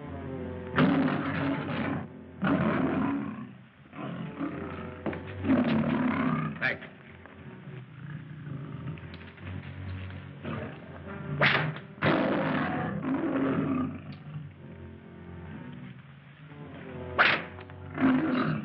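A lion roaring and snarling several times, each roar about a second long with a few seconds between, one near the start and another close to the end.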